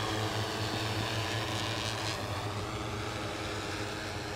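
Multirotor agricultural spraying drone flying at a distance, its rotors giving a steady hum of several layered tones that grows slightly fainter.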